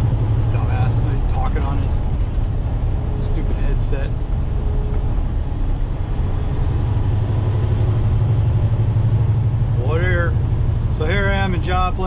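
Semi truck cab at highway speed: a steady low drone of engine and road noise. A voice is heard briefly near the end.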